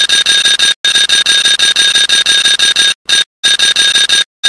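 An alarm bell ringing continuously and loud, with rapid repeated strikes and a bright metallic tone; it cuts out abruptly twice, once briefly just under a second in and again for about half a second around three seconds in.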